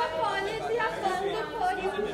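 Several people talking at once in a close crowd: indistinct, overlapping chatter.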